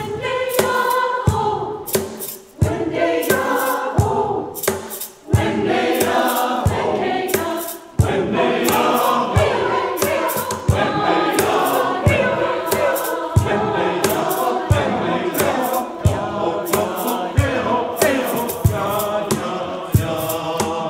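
Mixed church choir singing in parts, accompanied by piano, with hand percussion striking a steady beat.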